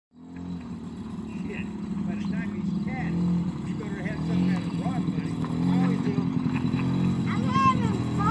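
Suzuki LT50 QuadRunner's small 49cc two-stroke single-cylinder engine running, growing louder as the quad comes closer.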